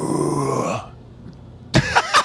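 A man's throaty, rasping vocal noise lasting about a second, which stops shortly before speech starts again.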